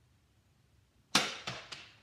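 A toy Nerf shotgun firing: a single sharp pop about halfway through, followed quickly by two fainter clicks.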